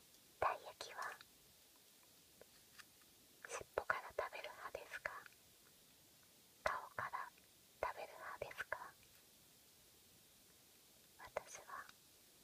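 Close-up whispered speech in short phrases, with quiet pauses between them.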